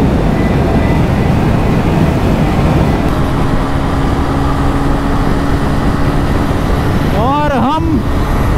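Wind rushing over the rider's microphone at highway speed. About three seconds in, a motorcycle engine's steady drone joins it, held at constant revs in top gear. A brief vocal exclamation comes near the end.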